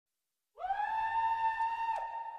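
A single high held vocal note from the song's unaccompanied vocal track. It slides up into pitch about half a second in, holds steady, and starts to fade near the end.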